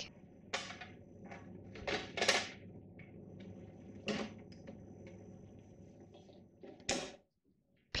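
Plastic clicks and knocks from a De'Longhi ECAM22.110 bean-to-cup coffee machine as its service door is shut and its water tank put back: a handful of short, separate knocks, the loudest about two seconds in and another near the end.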